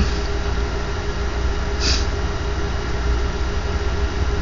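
Steady low mechanical hum, like an idling engine, with a brief soft hiss about two seconds in.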